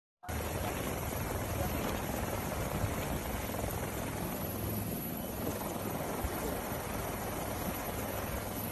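A helicopter running, heard from inside the cabin as a steady noise with a strong low hum.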